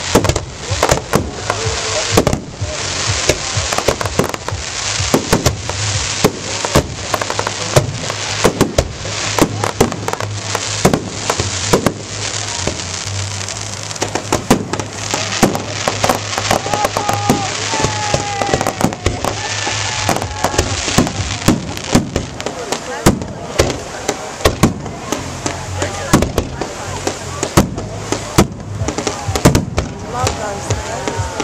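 Aerial fireworks shells bursting in quick succession: many sharp bangs, several a second, with crackling between them.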